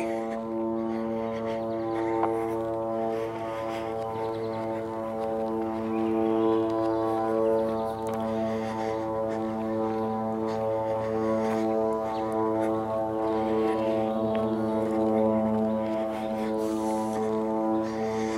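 A steady low drone on one held pitch with a long row of overtones, unchanging in pitch and level.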